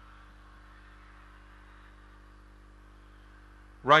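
Faint steady electrical hum with a low hiss, and no distinct event. The commentator's voice comes in near the end.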